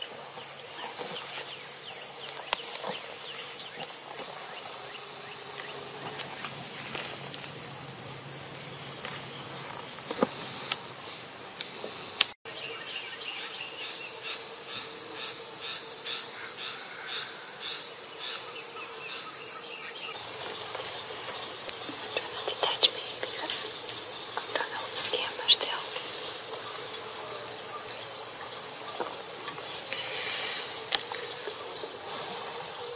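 Steady, shrill insect chorus, a continuous high buzz with a fine rapid pulse, broken by a short gap about twelve seconds in. A run of quick, repeated chirps joins in just after the gap.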